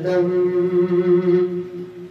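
A man singing an Urdu devotional salaam (naat), holding one long note that fades away near the end.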